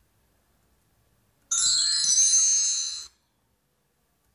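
A bright, high-pitched chime sound effect, about a second and a half long, that starts abruptly and cuts off suddenly.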